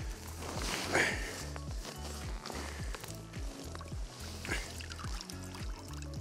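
Background music with a steady, regular beat, about two beats a second, and a brief soft sound of water about a second in.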